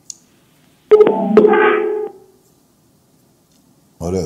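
A short electronic tone of several steady pitches sounding together, lasting about a second and starting abruptly about a second in, after a faint click.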